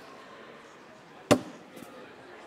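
A cornhole bag landing on the board with a single sharp thud about a second and a quarter in, followed by a couple of faint ticks, over low background room noise.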